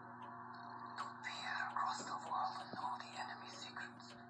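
Hushed, whispering voices from a film soundtrack played through a television, starting about a second in, over a steady low hum.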